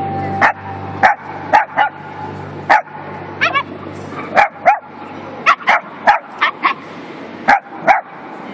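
A small dog or puppy barking in short, sharp, high-pitched yaps, about fifteen of them at uneven spacing, one near the middle breaking into a quick quavering run.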